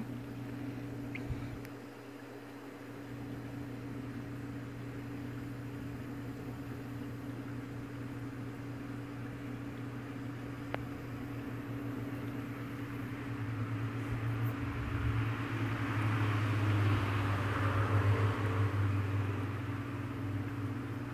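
Steady low electric machine hum that holds the same pitch throughout. It gets louder, with a hiss, over the last several seconds.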